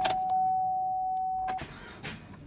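A car's electronic dashboard warning chime sounding one steady, single-pitched tone that cuts off about one and a half seconds in, with a few light clicks.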